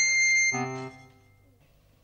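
Electronic musical sting at a scene change: a high held tone, the end of an upward slide, breaks off about half a second in, then a brief lower note fades away to near silence.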